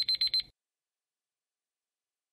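A countdown timer's time-up alarm: a short, high ringing tone pulsing rapidly, about five quick pulses in half a second, then cutting off.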